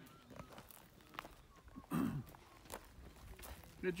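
Running footsteps on a dirt road: scattered light steps, with one short louder burst about halfway through.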